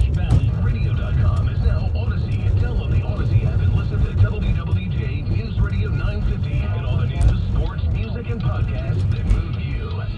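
A car radio broadcast, a voice with some music under it, heard inside a moving car over a steady low rumble of road and engine noise.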